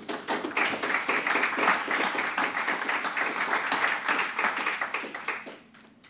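Audience applauding, many hands clapping together, fading out near the end.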